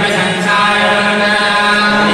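Male priests chanting Hindu mantras together into microphones, in long held tones on a steady pitch.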